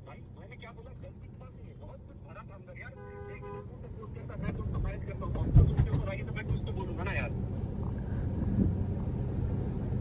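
Road-traffic rumble in the background of a phone call, growing louder from about four seconds in, with faint distant voices. A short car-horn toot sounds about three seconds in.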